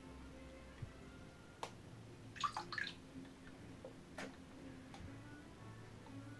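Small sounds of bathwater in a bathtub as a monkey moves about in it: two sharp taps and, about halfway through, a brief cluster of squeaky splashing sounds. Faint music plays underneath.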